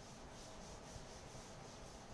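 Faint rubbing of a duster across a chalkboard, wiping off chalk writing in repeated strokes.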